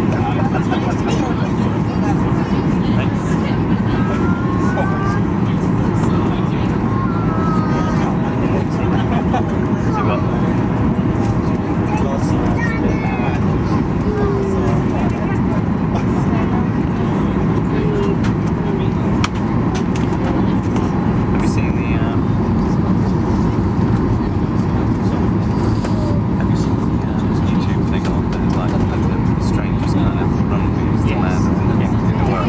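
Steady, unbroken jet engine and airflow noise heard from inside an airliner's cabin as it descends on approach to land, strongest in the low range.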